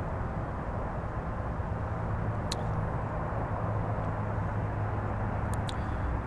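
Steady low rumble of outdoor background noise, with a few brief faint clicks about two and a half seconds in and again near the end.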